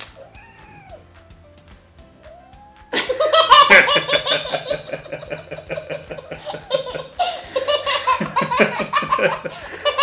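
A little girl laughing hard, with a man laughing along, breaking out suddenly about three seconds in after a quiet start.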